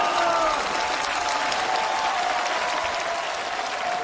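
Theatre audience applauding steadily.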